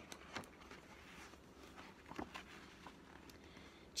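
Very faint paper handling of a large picture book's pages being turned, with a few soft taps, over quiet room tone.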